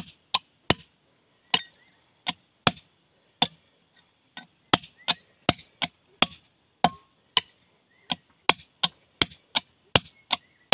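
Hand hammer striking a steel chisel held against a large stone slab: sharp, ringing metal-on-metal blows at about two a second, with a couple of short pauses between runs of strikes.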